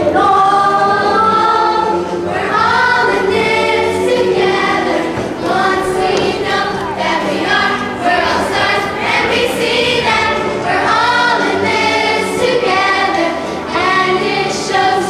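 A large group of young voices singing together in chorus over a musical accompaniment, in continuous sung phrases.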